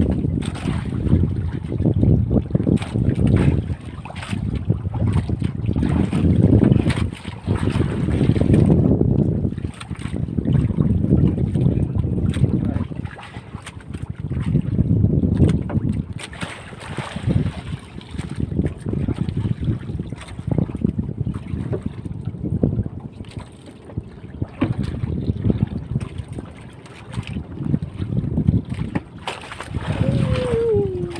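Wind buffeting the microphone aboard a small outrigger boat at sea, swelling and dropping in irregular gusts every few seconds with a rough crackle.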